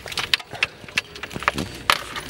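Several sharp clicks of a car ignition key being turned and its key ring rattling, with no starter or engine response: the car's battery has been removed.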